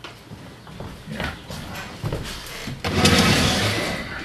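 Scattered knocks and shuffling movement noise in a room, then, about three seconds in, a loud scraping rush lasting about a second.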